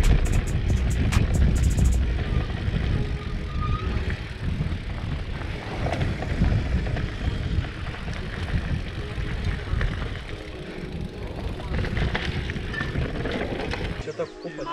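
Wind on the camera microphone and a mountain bike's tyres rumbling over a dirt trail during a fast descent, a dense low rumble. A beat of regular ticks runs in the background for the first two seconds, then stops.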